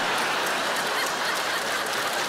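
Studio audience laughing heartily, mixed with clapping, after a comedy punchline.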